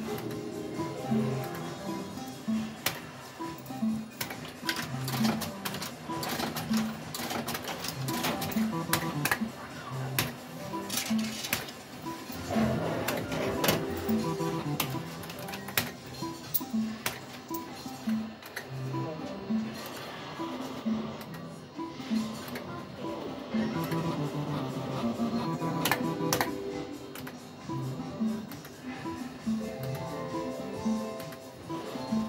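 Cloud 999 fruit machine being played, its reels spinning, with a repeating electronic tune and frequent sharp clicks.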